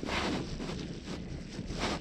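Wind rushing over the action camera's microphone in uneven gusts.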